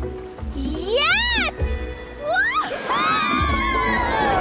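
Cartoon background music with a girl character's high-pitched squeal of delight that rises and falls about a second in, then a shorter rising squeal. About three seconds in the music swells louder and fuller.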